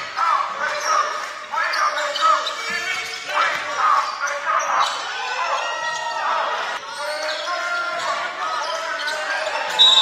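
Live basketball game sound on a hardwood court: a ball bouncing, many short sneaker squeaks and players' voices. The sound jumps abruptly a couple of times where clips are cut together.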